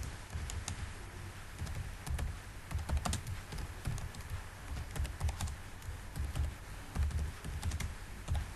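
Typing on a computer keyboard: a quick, uneven run of key clicks as a file name is typed in.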